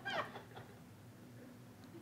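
A single short, high-pitched meow-like cry that falls in pitch, right at the start, followed by faint room tone.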